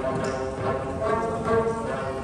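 An ensemble of Tibetan dranyen lutes strummed together, playing a folk tune in a steady, even rhythm.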